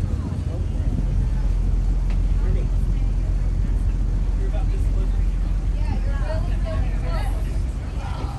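Boat engine running with a steady low drone, and faint voices near the end.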